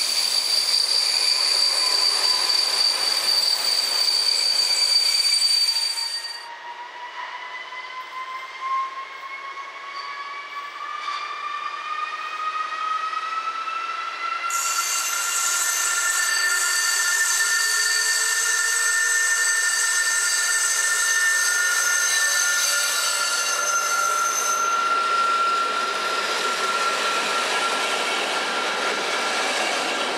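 A Czech Railways passenger coach rolling past with a steady high-pitched wheel squeal. About six seconds in, this gives way to a class 854 diesel railcar pulling away, its engine note rising steadily in pitch for several seconds as it gathers speed and then holding.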